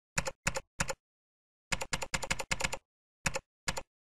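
Computer keyboard typing: about a dozen keystrokes, three spaced ones, then a quick run of about seven, then two more, with dead silence between them.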